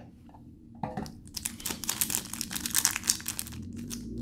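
Thin clear plastic bag wrapped around a new speedcube crinkling as fingers handle it and pick at it to find the opening, starting about a second in.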